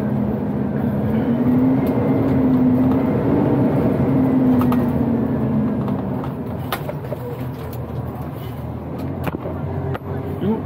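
Diesel engine of an Iveco Acco garbage truck running under way, heard from inside the cab. The engine note rises and falls a couple of times, then drops away about halfway through as the truck slows. Two sharp knocks come in the last few seconds.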